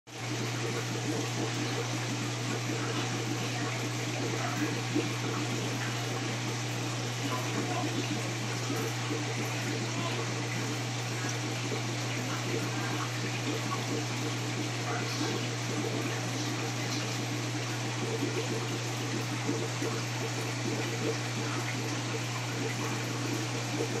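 Steady low hum of aquarium equipment with continuous bubbling and trickling from an air-stone bubble column in the tank.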